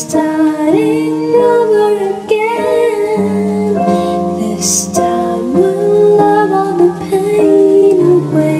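Music: a slow ballad with a female voice carrying a gliding melody over plucked guitar.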